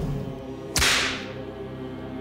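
A single sharp whip-lash sound effect about three-quarters of a second in, its hiss dying away over about half a second. Under it is a steady, low held drone from the film's score.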